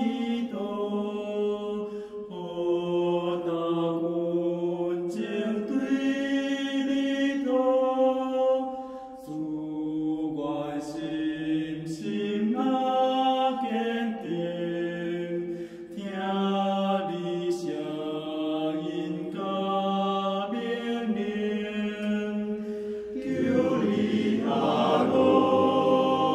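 A choir singing a slow hymn in Taiwanese, in held notes that change every second or two, with short breaks between phrases. The singing grows fuller and louder in the last few seconds.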